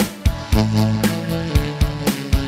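Tenor saxophone playing the melody of a Korean trot song over a backing track with guitar, bass and a steady drum beat.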